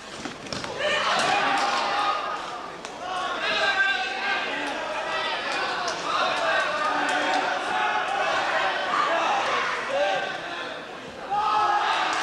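Voices shouting and talking in a large, echoing sports hall, with a few sharp thuds from wrestlers' bodies on the mat.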